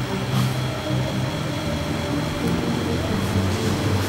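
Background music: a melody of short held notes changing pitch every fraction of a second.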